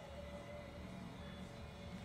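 Faint steady electrical hum with a thin high whine over it, from the just-powered amplifier and bench electronics.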